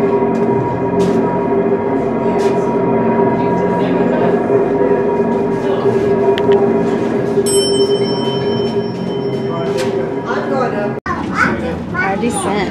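Incline railway's cable hoist machinery running: electric drive motors and gearing turning the large cable wheels give a steady hum with several held tones. It cuts off abruptly near the end, and voices follow.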